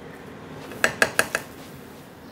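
A cooking spatula knocking against the rim of a nonstick pan about four times in quick succession, about a second in.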